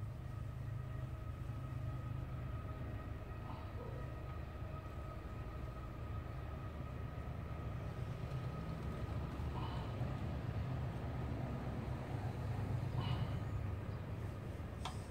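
A steady low hum, with a few faint clicks and taps of small metal parts being handled.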